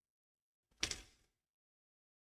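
A single sharp knock about a second in, dying away within half a second.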